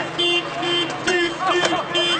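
A car horn honking in short repeated blasts, about two a second, over people shouting, with a few sharp knocks.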